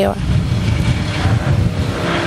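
A motor vehicle running close by: a fairly steady low rumble with a hiss of noise above it.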